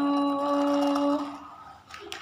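A woman's voice holding one long, drawn-out vowel at a steady pitch: the stretched-out end of the spoken word "melaju". It trails off about one and a half seconds in.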